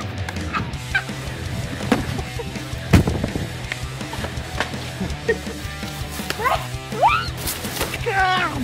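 Background music with a sustained bass line, over which people give short rising shrieks and yelps during a snowball fight, loudest near the end. A single sharp thud comes about three seconds in.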